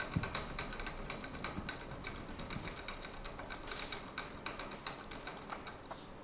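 Chipmunk making many rapid, irregular small clicks and crunches in its cage, with a soft thump at the very start.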